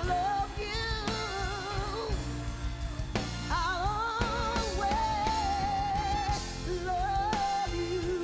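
A woman singing soul live with a band, drawing out long notes with vibrato over drums and bass; one note is held for over a second near the middle.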